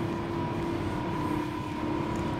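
Electric double-deck passenger train starting to move off slowly: a steady electrical hum with two held tones, one low and one higher, over a rumbling bed of noise.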